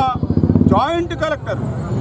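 A man speaking in Telugu over a low, rapidly pulsing engine rumble.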